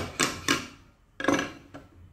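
Three sharp metallic knocks with a short ring, a steel chisel striking and clinking against the bolts and the board of a jigsaw table top.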